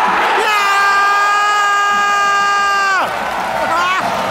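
Football crowd in the stands cheering. About half a second in, one long, steady, high held note starts over the crowd, lasts about two and a half seconds and drops away abruptly. There is clapping near the end.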